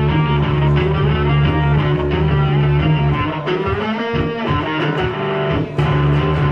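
Electric bass guitar played loud through an amplifier in a rock performance: heavy sustained low notes, which thin out about three and a half seconds in while a note bends up and down, then come back in full near the end.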